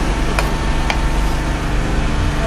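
Metal spoon clinking twice against the frying pan as food is stirred, over a steady low engine-like hum.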